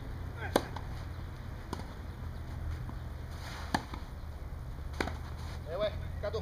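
Tennis rally on a clay court: a serve struck with a loud pop about half a second in, then racket strikes on the ball a second or two apart, some fainter from the far end of the court.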